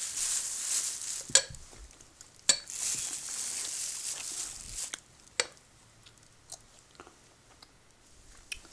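Thin plastic bag rustling and crinkling in two stretches as a ceramic wax warmer and its wax are handled on it, with three sharp clicks or knocks, the loudest about a second and a half in. The last few seconds are nearly quiet with a few small ticks.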